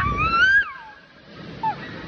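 A girl's high-pitched excited scream, wavering and then sliding down in pitch and cutting off less than a second in, as she goes down an inflatable slide; faint background voices after it.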